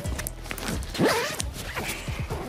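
Jacket zipper being pulled down, a quick run of ticks, over background music.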